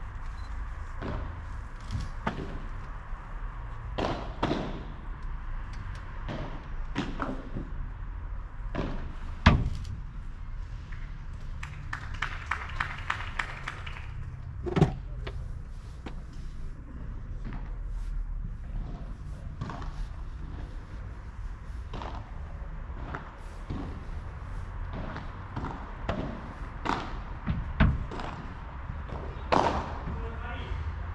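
Padel play: irregular sharp knocks of the ball off paddles, the court surface and the glass back walls, loudest about ten and fifteen seconds in, over a steady low rumble.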